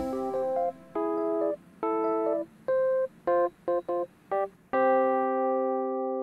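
Solo keyboard playing the closing bars of a pop worship song: a run of short, detached chords with silences between them, then one long held chord that slowly fades.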